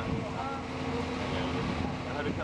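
Steady engine hum from fire apparatus running at the scene, over a low rumble of wind on the microphone.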